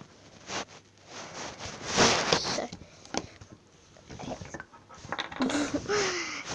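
Rainbow slime being pulled from its tub and squished by hand: a few short wet squelching, rustling bursts, the loudest about two seconds in.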